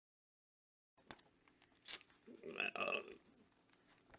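Dead silence for about the first second, then a man's breath and a drawn-out, hesitant 'uh', with a few faint clicks around it.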